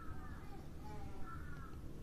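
Faint squeaking of a marker pen on a whiteboard as figures are written: two short squeaks, one near the start and one a little past the middle, over a low steady hum.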